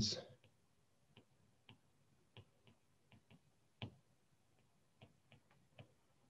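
Faint, irregular clicks of a stylus tapping on a tablet screen during handwriting, with one louder tap about four seconds in.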